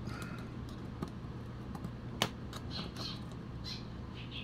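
Mini flathead screwdriver prying and scraping under a corroded metal battery contact in a plastic battery compartment: faint scratches and a few light clicks, the sharpest about two seconds in, over a steady low hum.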